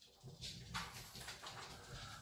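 Faint, uneven scratching of a coin rubbing the coating off a scratchcard square.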